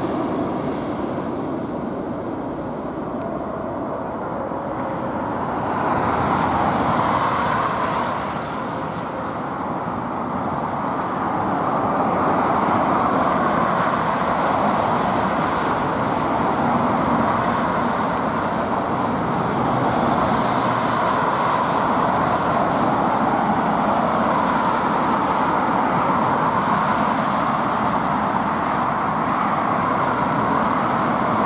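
Steady roar of road traffic passing close by, mixed with the jet engines of an Airbus A320 landing and slowing on the runway. The noise swells about six seconds in and again from about twelve seconds on.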